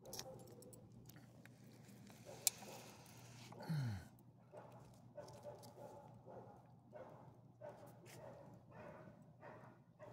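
A small dog snuffling faintly at the pavement, a run of short soft sounds about twice a second in the second half. A sharp click comes about two and a half seconds in, and a brief low sound falling in pitch about four seconds in.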